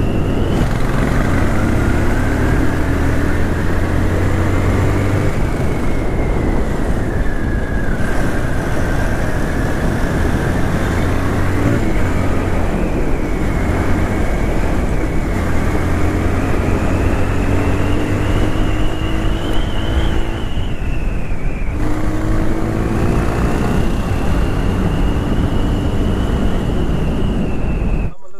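Motorcycle engine running at road speed, its pitch climbing and falling several times with throttle and gear changes and easing off briefly about three-quarters through. Wind rushes over the microphone.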